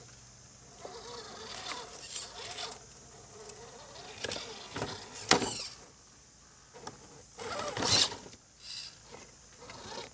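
Redcat Gen8 Scout II scale RC rock crawler's electric motor and geared drivetrain whining in several short throttle bursts, its pitch rising and falling as it crawls over rocks. There is a sharp knock about five seconds in.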